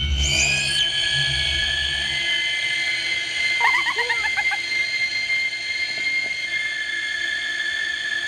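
Horror-style soundtrack under a title sequence. It opens on a deep rumbling boom, then holds high eerie drone tones, with a short warbling cry about four seconds in.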